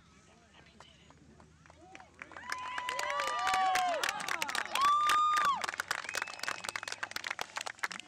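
Several children shouting and screaming at once in high voices. It starts about two seconds in and is loudest around five seconds, with many sharp taps or claps mixed in, then dies down near the end.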